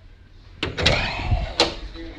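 Flush hidden panel door pressed open by hand: a few sharp clicks and knocks as it releases and swings open.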